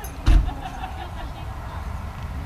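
A brief low thump about a third of a second in, against faint voices in the background.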